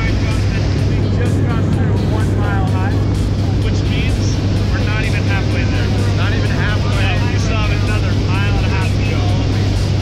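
Steady drone of a skydiving jump plane's engine and propeller heard inside the cabin in flight, with a strong steady low hum. People talk under the noise.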